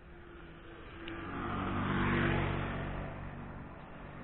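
A car driving past, its engine and tyre noise swelling to a peak a little past two seconds in, then fading.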